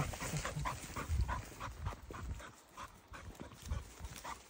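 A hunting dog panting in quick, regular breaths, about three a second, quieter in the second half.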